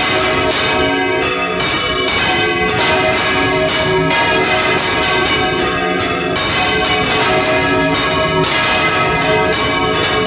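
Several large church bells rung in full rotation (Valencian volteig), swinging full circle on wooden headstocks. They clang loudly and repeatedly in a dense, overlapping peal, heard close up inside the belfry.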